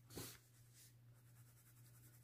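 Faint scratching of a colored pencil shading on paper, with one brief louder stroke just after the start.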